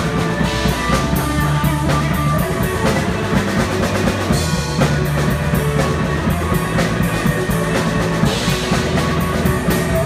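Live blues-rock band playing an instrumental passage with no singing: electric guitars over a steady drum-kit beat, loud and even throughout.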